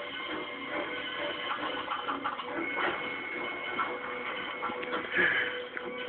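Background music with faint, indistinct voices, as from a television playing in the room, with a thin steady tone running through it.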